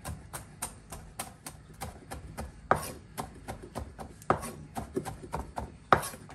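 Chef's knife chopping celery leaves on a wooden cutting board: quick, even strokes about four a second, with a few harder knocks among them.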